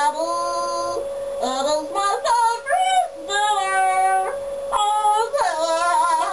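A child singing a made-up song in long, held notes that slide up and down between short pauses, with a steady tone running underneath.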